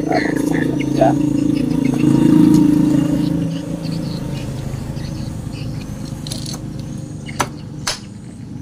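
A motor vehicle engine running, swelling to its loudest a couple of seconds in and then fading away, with two sharp metal clicks near the end.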